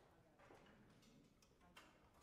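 Near silence in a concert hall, with a few faint clicks and rustles.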